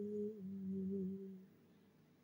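A woman's voice holding one long, low chanted note that fades out after about a second and a half.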